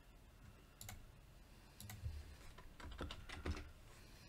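Faint computer keyboard typing: a handful of scattered, irregular keystrokes as a misspelled word is corrected.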